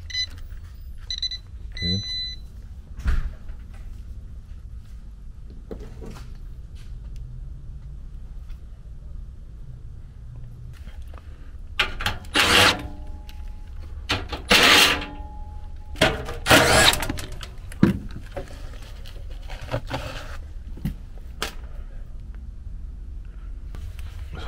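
A pen-type non-contact voltage tester beeps a few times in the first two seconds as it checks that the power is off. About halfway through, a cordless impact driver runs in three short, loud bursts on the air handler's blower housing.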